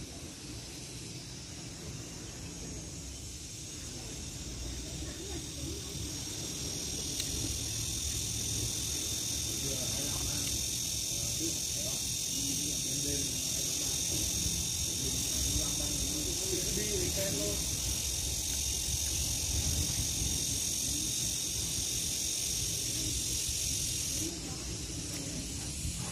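A steady, high-pitched insect buzz from the trees grows louder several seconds in and drops off sharply near the end, over a low rumble of wind on the microphone.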